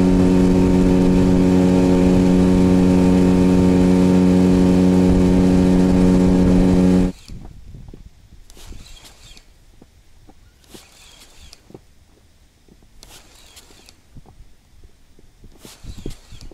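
Inflatable boat's outboard motor running at a steady throttle, one unchanging tone, while the boat travels. It cuts off abruptly about seven seconds in, leaving only faint scattered noises.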